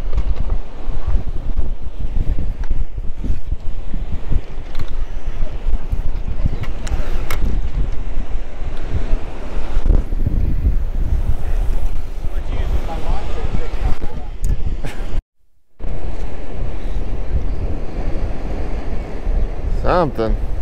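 Wind buffeting the microphone in gusts, with ocean surf beneath. The sound cuts out completely for about half a second roughly three-quarters of the way through.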